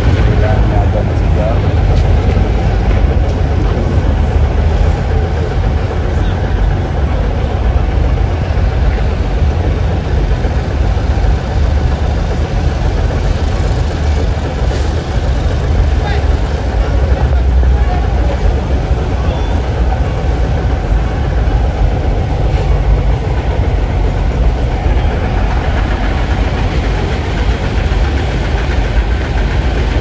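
Steady low rumble of road traffic and vehicle engines, with faint voices in the background.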